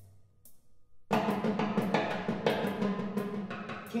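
Solo multi-percussion, drums struck with sticks. After about a second of near silence, a dense run of rapid strikes starts suddenly and keeps going over a steady low tone.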